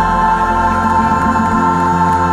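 Church choir and lead singer holding one long, steady chord together, with piano accompaniment.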